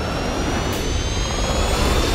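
Jet-like aircraft engine whine slowly rising in pitch over a heavy low rumble, the sound-designed engines of the Bat flying vehicle, mixed with trailer music.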